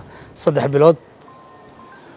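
A man speaking Somali says one short phrase, then pauses; in the pause only faint steady background noise and a faint thin tone remain.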